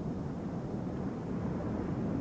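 Wind buffeting an outdoor microphone: a steady low rumble with no clear pitch.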